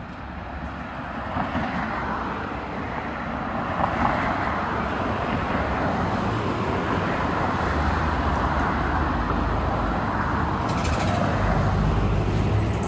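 Road traffic noise, a steady rumble and rush of passing motor vehicles that builds over the first few seconds and then holds steady.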